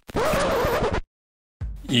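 A harsh, scratchy digital glitch sound effect, lasting about a second and cutting off suddenly. A man's voice begins near the end.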